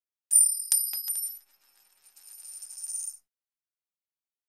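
Intro logo sound effect: a bright, high metallic chime struck with a few quick clicks, like coins. About two seconds in, a shimmering swell builds and then stops suddenly.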